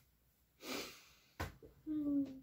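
A woman's short, breathy laugh about half a second in, then a light knock, with her voice starting near the end.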